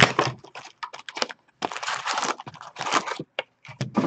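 A sealed trading-card hobby box being torn open and its card packs pulled out and stacked, heard as a run of irregular paper-and-cardboard rips, crinkles and light taps.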